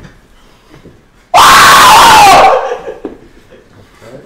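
A young man screams once in shocked excitement, about a second long, starting just over a second in; the pitch rises and then falls, and the scream is loud enough to clip the recording before it trails off.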